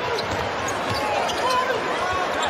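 A basketball dribbled on a hardwood court, over the steady noise of an arena crowd.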